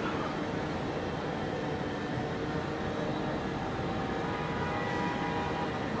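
Steady city background noise, a hum of traffic and machinery with a few faint steady tones running through it.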